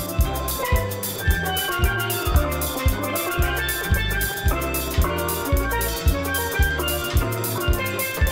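A steel pan played as a melody, quick struck notes ringing over a steady bass-and-drum beat at about two beats a second.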